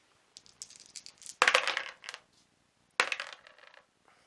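A handful of small plastic dice thrown into a plastic tub, clattering and rattling against its sides, loudest in two bursts about one and a half seconds and three seconds in.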